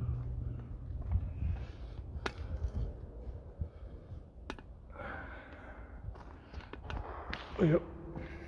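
A man's breathing and movement while he walks with a handheld phone, with a few sharp clicks of handling and a low rumble. A brief voiced sound comes near the end.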